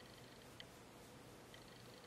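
Near silence: room tone with a faint steady hum and two faint clicks about a second apart.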